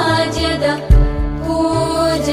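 A devotional hymn chanted by a single voice over music, with low thumps under it; the heaviest thump comes about a second in.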